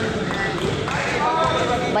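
A volleyball bounced on the hard indoor court floor a few times, with voices in the hall.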